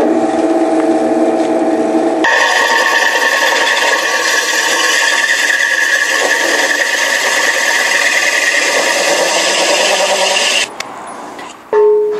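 Drill press with a hole saw, first spinning freely with a steady hum. About two seconds in the saw bites into a vitreous china toilet cistern, wet-cut with water, and a loud harsh grinding takes over for about eight seconds before it stops. A brief ringing note follows near the end.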